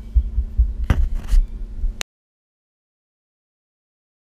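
Camera being handled up close, with uneven low bumps and rubbing on its microphone over a faint steady hum and a sharper knock about a second in. The recording then cuts off suddenly about two seconds in.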